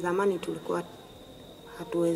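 A woman speaking in a language other than English, with a pause of about a second in the middle before she goes on. A faint steady high tone runs underneath.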